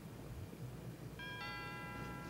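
Two-note door chime: a higher note about a second in, then a lower note, both ringing on steadily, the sound of a shop door chime announcing someone coming in.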